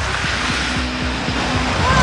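A motorcycle engine running under the film's background music. Held music notes swell in near the end.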